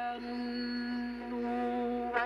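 Shortwave AM broadcast of chant-like music received on a small software-defined radio and played through its speaker: one long, steady held note.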